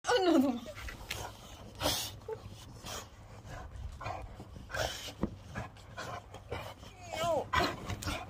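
Dogs panting and snuffling close to the microphone, with short irregular breaths, and a brief vocal glide at the start and another about seven seconds in.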